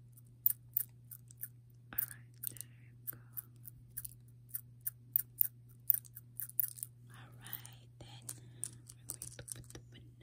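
Rapid, irregular small sharp clicks, several a second, from long fingernails and tiny plastic miniature-food pieces being picked up and set down on a toy plate. A steady low hum runs underneath.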